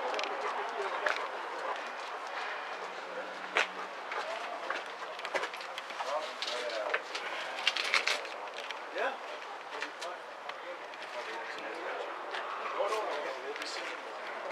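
Indistinct voices of people talking in the background, with a few sharp clicks and knocks scattered through.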